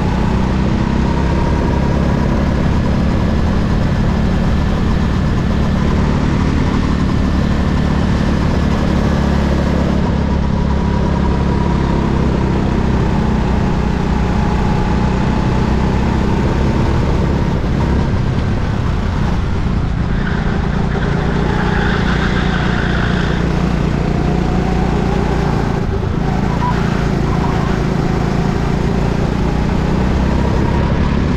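Go-kart engine running at speed, heard from onboard the kart, its pitch rising and falling gently as it laps the track.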